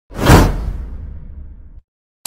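Whoosh sound effect: a sudden loud swell in the first half-second, then a fading tail with a low rumble underneath that cuts off abruptly shortly before the end.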